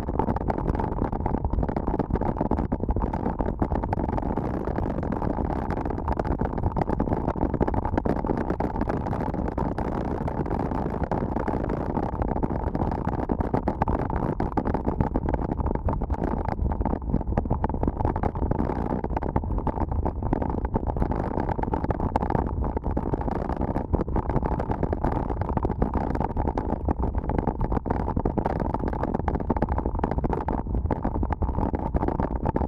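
Wind buffeting a bike-mounted camera's microphone with mountain-bike tyres rumbling on a dirt road at about 25 km/h: a steady, dull rush with frequent small jolts from the rough surface.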